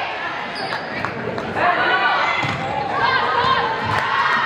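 Volleyball rally in a gymnasium: the ball is struck sharply several times as players pass and set it, over the continual shouting of players and spectators, echoing in the hall.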